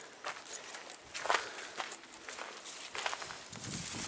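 Footsteps on dry grass and dead leaves: a few uneven steps with rustling between them.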